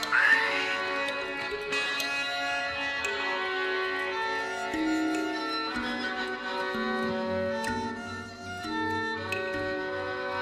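Experimental drone music: layered sustained violin tones holding long notes and shifting pitch every second or so, with a few faint clicks.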